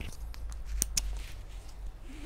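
Rustling and handling noise from a worn Osprey nylon travel backpack as its straps are adjusted, with a few sharp clicks, the clearest about a second in.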